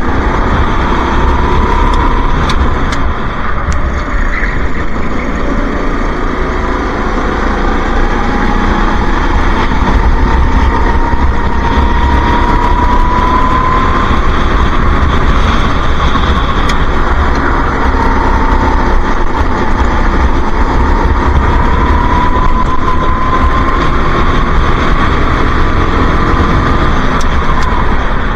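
Go-kart engine heard from onboard while racing round a lap, loud and continuous, its pitch climbing slowly and dropping back twice as the throttle is worked, over a steady low rumble.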